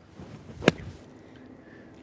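A wedge driven down hard into firm bunker sand behind the ball on a bunker shot: one sharp thump of the club into the sand, about two-thirds of a second in.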